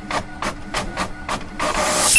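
3D-printer print-head mechanism sound effect: rhythmic mechanical clicking about three times a second over a faint steady hum. A rising whoosh swells in near the end.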